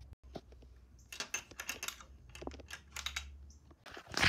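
A series of light, irregular clicks and taps, several a second, from about a second in.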